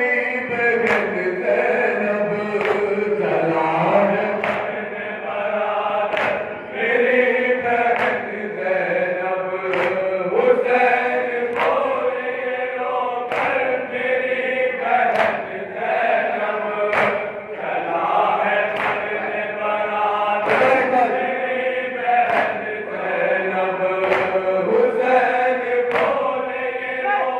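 A group of men chanting a Shia noha together, with matam (palms beating on chests) striking in time about once a second.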